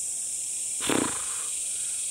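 Steady high-pitched insect droning, with one short wordless vocal sound from a man about a second in.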